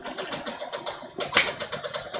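Tobacco pipe being lit and puffed: a quick run of short, soft puffing pops from drawing on the stem, with one louder puff just past the middle.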